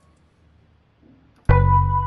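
Near silence, then about one and a half seconds in, a synthesized melody and bassline suddenly start playing back from the music software.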